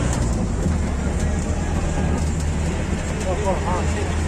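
Steady low rumble of a tourist road train running, heard from inside its open-sided passenger carriage, with faint passenger voices about three and a half seconds in.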